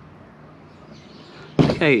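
Motor oil pouring in a thin stream into a plastic measuring jug: a faint, steady trickle. A man's voice cuts in near the end.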